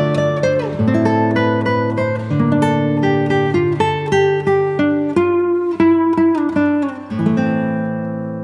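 Background music: an acoustic guitar picking a melody in quick single plucked notes with some strummed chords.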